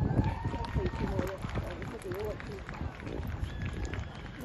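Hoofbeats of a horse cantering on turf, with people talking in the background.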